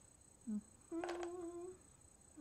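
A woman hums: a short low "mm" about half a second in, then a held "hmm" on one steady pitch for nearly a second.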